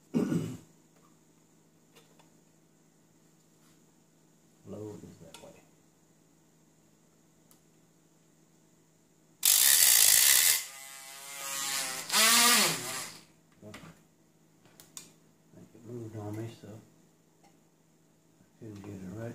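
A handheld rotary tool with a small cutting disc grinding a slot into the head of a tiny Allen screw to turn it into a flat-head screw. One loud grinding burst of about three and a half seconds starts about halfway through, the motor's pitch falling and rising again between its two loudest spells. Otherwise quiet, with a few faint murmurs.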